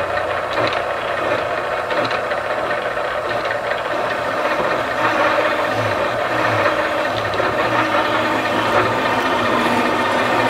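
A valve-seat machine's spinning cutter cutting an exhaust seat pocket into a cylinder head: a steady scraping, grinding metal-cutting noise with a few faint clicks in the first couple of seconds.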